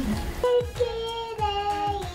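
A child singing long held notes over music with a steady beat.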